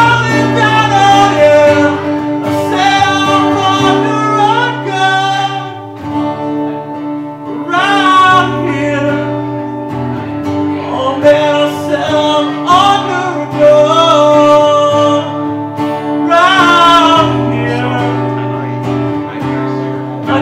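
A man singing with his own acoustic guitar accompaniment, in long sung phrases over steady guitar chords.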